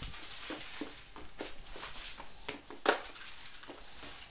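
Broom bristles brushing and scuffing over rubber floor matting as a piece of paper is swept along, in soft, irregular strokes, with one louder brief scrape about three seconds in.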